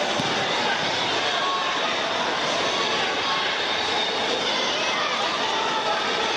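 Steady babble of many voices from spectators and competitors in a large gymnasium, with no single voice standing out.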